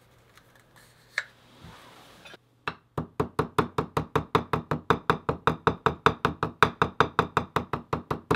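Metal hammer tapping glued leather flat against a granite slab in a fast, even run of knocks, about six a second, starting about two and a half seconds in. The blows press the glued seam together to set the bond.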